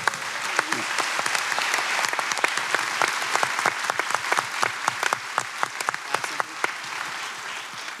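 Audience applauding: a dense, steady patter of many hands clapping that is fullest in the first few seconds and eases slightly toward the end.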